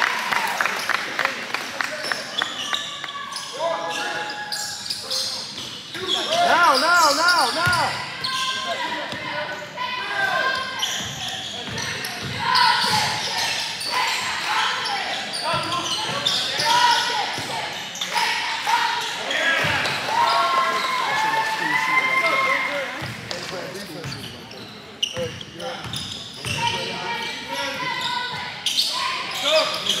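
Basketball bouncing on the court floor as it is dribbled and played, under spectators' and players' voices and shouts that carry on without a break.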